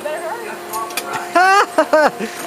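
People's voices, with a loud wavering, high vocal squeal about one and a half seconds in and short voiced bursts just after.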